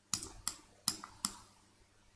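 Four sharp clicks from a computer's controls, roughly one every 0.4 seconds, as the user works the mouse and keys.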